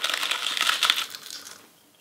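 Crunching of a deep-fried, puffed rice paper crisp being bitten into: a dense crackle of many small snaps that is strongest in the first second, then fades out.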